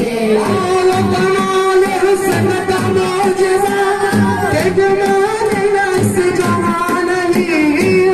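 A group of male voices singing a qawwali in unison through microphones, drawing out long, slightly wavering notes over a steady rhythmic beat.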